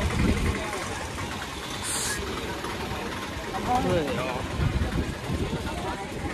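Street ambience: indistinct voices of passers-by over a low, steady rumble, with a short hiss about two seconds in.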